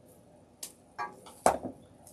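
Metal wire cutters handled on a tabletop: two light clicks, then a sharper clack about halfway through.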